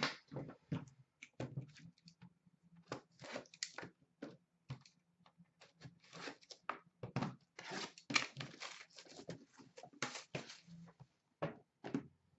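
A cardboard hockey card box being picked up and handled: irregular rustles, scrapes and taps of cardboard and wrapping, some of them crinkly.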